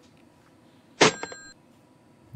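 Telephone call cut off as the other party hangs up: a sharp click about a second in, followed by a short, high electronic tone that stops after about half a second.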